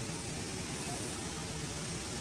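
Steady low rumble and hiss of outdoor background noise, with no distinct event.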